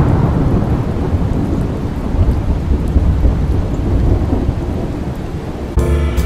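Thunder rumbling over steady rain, loudest at the start and slowly easing off. Music cuts in near the end.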